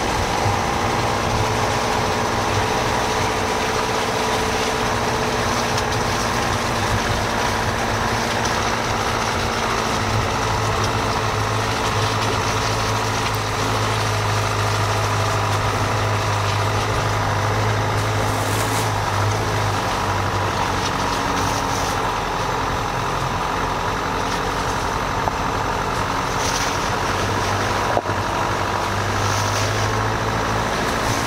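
Dacia Duster's engine running steadily as the car crawls along a muddy, rutted dirt lane, with a low even drone and road noise. A single sharp click comes near the end.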